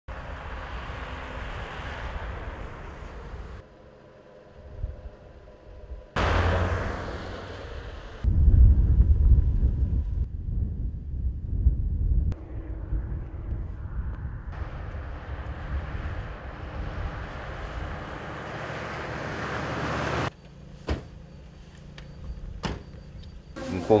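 Outdoor street sound with road traffic, a steady noise that changes abruptly several times as the footage cuts, heaviest and lowest for a few seconds near the middle; a few sharp clicks near the end.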